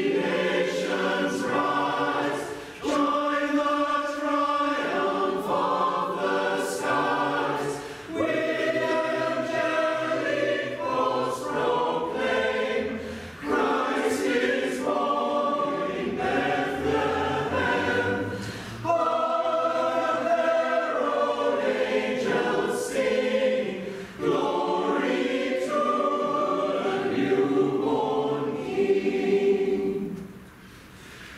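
Mixed-voice choir of men and women singing together, in phrases of about five seconds with short breaks for breath between them. The singing stops right at the end.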